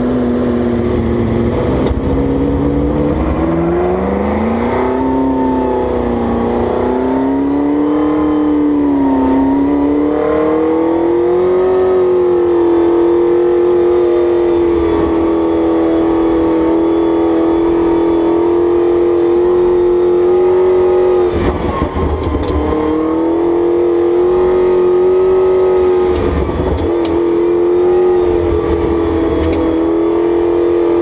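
The 1969 Porsche 908 Longtail's 3-litre flat-eight engine, heard loud from the cockpit. Its note climbs and wavers over the first several seconds, then holds fairly steady, with two brief dips in the engine sound about two-thirds through and again a few seconds later.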